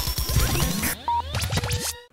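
Radio station jingle: electronic music with sweeping whooshes, record-scratch effects and short beeps, cutting off at the end.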